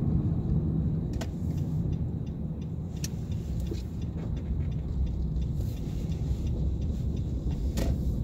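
Steady low rumble of a car's engine and tyres on a snow-covered road, heard from inside the cabin, with three light clicks spread through it.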